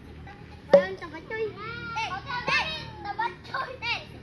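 Children shouting and calling out to each other at play, with one sharp knock under a second in, the loudest sound.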